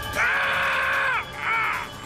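A man crying out in pain in two long, high-pitched yells, the first about a second long and falling away at its end, the second shorter.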